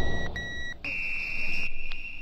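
Breakdown in a techno-house DJ mix: the kick drum and bass drop away, leaving a repeated electronic beep that gives way, just under a second in, to one held higher tone.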